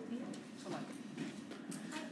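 Faint room noise with quiet background voices and a few light taps.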